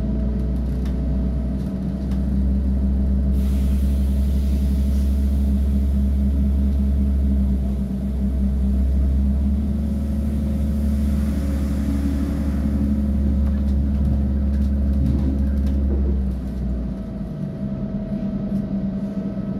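Inside an ÖBB class 5047 diesel railcar under way: a steady low rumble from the engine and running gear, with a constant hum over it and a rushing noise from the wheels on the track. The low rumble drops away near the end.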